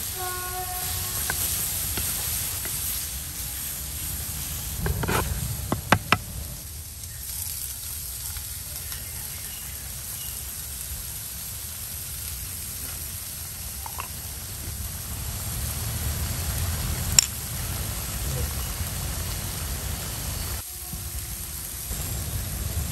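Chicken, egg and vegetables sizzling steadily in a clay frying pan over a fire, with a wooden spatula knocking against the clay pan a few times about five to six seconds in and one sharp tap later on.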